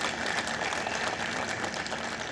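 An audience applauding: a dense, even patter of many hands clapping.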